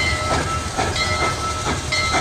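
Train running as it pulls into a station. A steady low rumble carries rhythmic puffs about twice a second and a thin, steady high tone.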